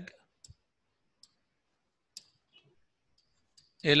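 A few faint, sharp clicks spaced irregularly over near-silence, from handwriting being entered with a pen input device on a computer. A man's voice resumes right at the end.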